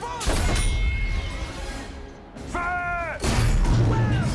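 Tank main gun firing twice in a film soundtrack: a heavy blast about a third of a second in and another just after three seconds, each followed by a loud rumble, over orchestral film music.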